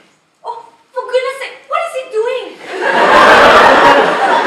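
A voice for a couple of seconds, then an audience laughing, the laughter swelling loudly about two and a half seconds in and carrying on.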